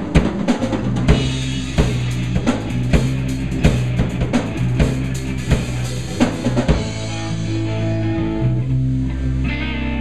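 Live rock band playing an instrumental passage: a drum kit played busily over held bass and electric guitar notes. About seven seconds in the drumming drops away, leaving sustained guitar and bass notes.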